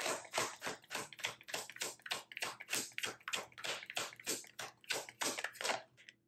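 A deck of tarot cards being hand-shuffled overhand: a quick, even run of soft card slaps and swishes, about four to five a second, that stops abruptly at the end.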